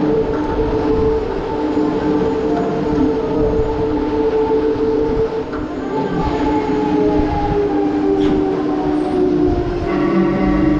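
Huss Break Dance fairground ride running: a steady mechanical whine in several pitches over a rough rumble. The pitches sink slightly from about six seconds in.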